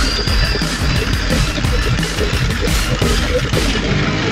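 Loud, steady music from a pachinko machine, the P High School Fleet All Star, playing through a special game mode.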